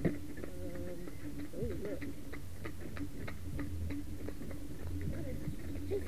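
A pony's shod hooves clip-clopping on a tarmac road in a steady rhythm, about three beats a second, over the low rumble of the carriage wheels.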